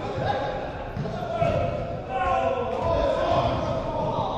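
Footballers shouting and calling to each other, their voices echoing in a large indoor sports hall, with dull thuds of the ball being kicked.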